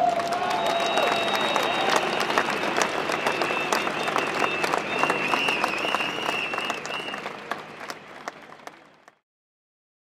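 Large crowd applauding, with a shout at the start and a high, wavering whistle-like tone held over the clapping for several seconds. The applause fades and cuts off about nine seconds in.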